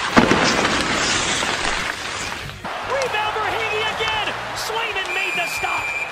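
A hissing scrape of ice spray from a hockey skate stop, lasting about two and a half seconds. Then arena noise follows: crowd and raised voices, with a short steady referee's whistle tone near the end.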